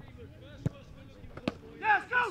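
Two sharp thuds of a football being struck, a little under a second apart, followed near the end by a man's shout.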